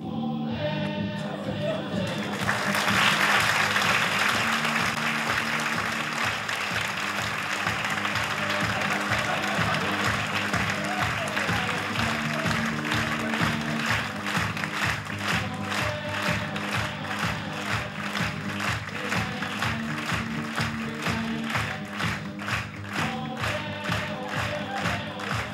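Theatre audience applauding over slow music of long held chords. The applause swells about two seconds in and later settles into even, rhythmic clapping.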